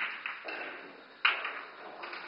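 Pool balls clicking against each other on a pool table: a few sharp clicks, the loudest about a second and a quarter in, when the cue ball strikes an object ball.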